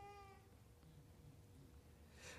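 Near silence: room tone with a faint steady hum, and a faint brief pitched sound in the first half-second.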